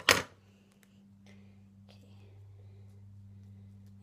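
A few faint clicks and rustles of duct tape being handled, over a steady low hum.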